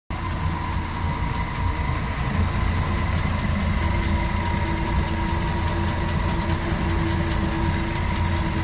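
Steady machine running: a low rumble with a steady higher whine over it.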